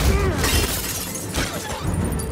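A loud crash of glass shattering, with a second sharp impact about a second and a half in. These are film action sound effects mixed over the score.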